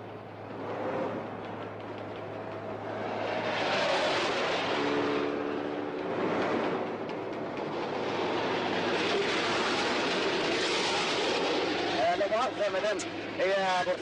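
Cars passing one after another on a road, each swelling and fading, with a car horn sounding for about a second and a half near the middle.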